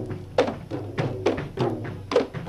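Manipuri dhol barrel drums beaten by hand in a fast, uneven rhythm, several strokes a second. Each stroke rings with a tone that drops in pitch.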